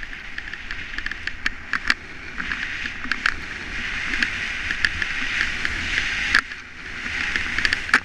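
Skis sliding and carving on groomed piste snow: a steady scraping hiss that swells and eases with the turns, with sharp clicks throughout and a short lull about six and a half seconds in.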